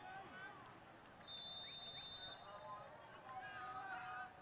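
Faint field-level sound of a soccer match: scattered shouts and voices from players and spectators. A steady high tone starts about a second in and lasts about a second.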